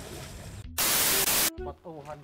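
A loud burst of static hiss, about three-quarters of a second long, that starts and cuts off sharply: a TV-static transition effect marking a scene cut.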